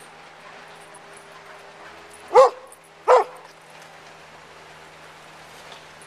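A dog barking twice in quick succession, over a steady low hum.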